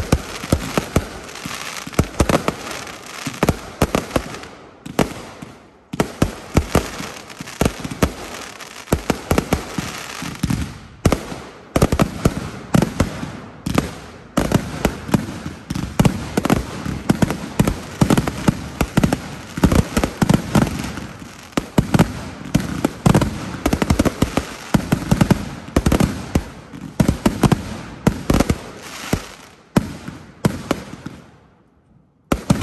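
Consumer aerial fireworks going off in a dense, continuous string of bangs and bursts, with brief lulls about 5 and 11 seconds in.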